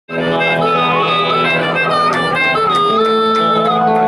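Live band playing the opening of a slow rock song: a harmonica melody bending in pitch over electric guitars and drums.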